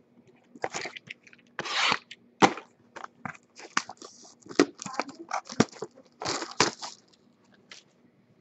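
Small cardboard box of trading cards being handled and torn open: irregular crackling and tearing of card stock, with a longer tear just before two seconds in and a sharp snap soon after.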